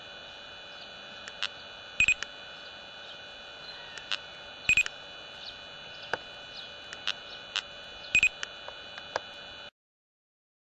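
Laser speed gun firing three shots: three short electronic beeps a few seconds apart over a steady electronic tone, with scattered faint clicks. The sound cuts off suddenly near the end.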